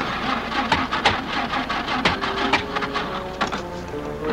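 Vintage truck running, with a dense, irregular mechanical rattle and clatter of knocks.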